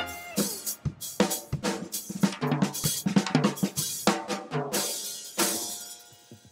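A student jazz big band's rhythm section plays with the horns dropped out: drum kit with snare, bass drum, hi-hat and cymbals, over keyboard and bass notes. A loud cymbal-and-drum accent comes near the end and then rings away to near quiet.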